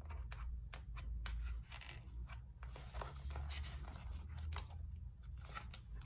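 Paper stickers being peeled off a sticker sheet with a pointed tool and pressed onto planner pages: scattered small clicks, crackles and short paper rustles over a low steady hum.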